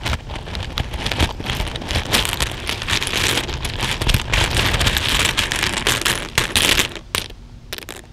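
A hand stirring and raking through a bowlful of plastic buttons and beads in a cloth-lined plastic bowl: a dense clattering rattle of many small pieces knocking together, dying down to a few separate clicks about a second before the end.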